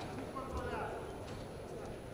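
Wrestlers' feet and hands thudding and slapping on the mat as they hand-fight, with a low thump about half a second in. Voices call out over a steady hall hum.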